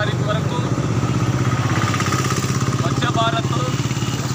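A small engine running steadily with a low hum and a fast, even pulse, its note rising a little around the middle, with voices faintly over it.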